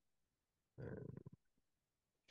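Near silence, broken about a second in by one short, quiet spoken hesitation sound, 'e'.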